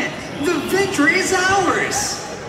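A voice speaking over the stage's sound system, with its pitch rising and falling in phrases.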